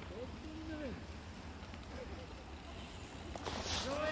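Faint voices of people calling out, in short rising and falling calls, over a steady low rumble, with a brief hiss shortly before the end.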